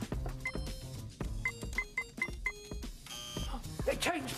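Electronic door keypad beeping as a code is punched in: one beep, then five short beeps in quick succession, followed by a short buzzing tone as the code is refused. Background music plays underneath.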